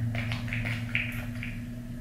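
Steady low electrical hum with a few faint, short handling sounds of hands working out of sight, spaced under half a second apart.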